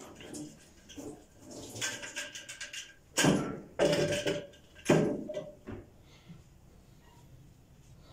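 A few short, indistinct bursts of speech, the loudest about three and five seconds in, then quiet.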